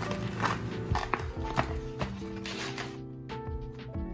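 Background music of held, slowly changing notes. In the first two seconds a few light rustles and clicks come from a plastic courier pouch being torn open.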